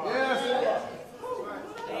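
Speech only: voices calling out in a large hall.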